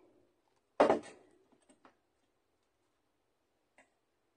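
A single sharp knock about a second in, then a few faint small clicks, from paper pieces and tools being handled on a craft cutting mat.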